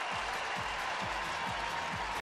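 Ballpark crowd noise after a run-scoring double, with a low drum beat thumping about twice a second.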